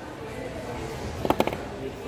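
A quick cluster of three or four sharp metallic clicks about a second and a quarter in, from steel pliers and thin copper wire being handled while the wire is wrapped tight around a pendant.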